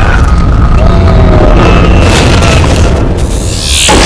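Loud action-scene soundtrack: dramatic music over a deep, continuous booming rumble, with a brief whooshing sweep near the end.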